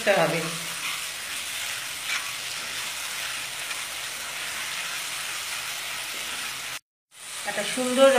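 Onion-tomato spice masala sizzling steadily in oil in a nonstick pan while a spatula stirs it. The sound cuts out briefly near the end.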